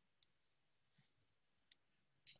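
Near silence: room tone with three faint, short clicks spread through it.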